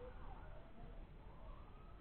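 Faint emergency-vehicle siren wailing, its pitch gliding slowly up through the second half, over a low steady background hum.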